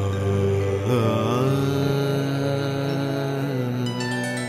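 Bengali devotional song near its close: a voice holding a long sung note over a steady low drone, the melody bending once about a second in and then sustained until it tails off near the end.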